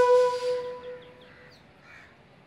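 A held flute note from the background score fades away over the first second and a half. It leaves faint outdoor ambience with a few small bird chirps, and a crow cawing near the end.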